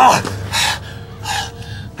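A man gasping and breathing hard while struggling: a loud, strained gasp at the start, then two short, heavy breaths about half a second and about a second and a third in.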